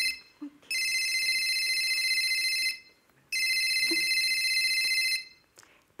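Telephone ringing twice, each ring a steady tone about two seconds long with a short pause between.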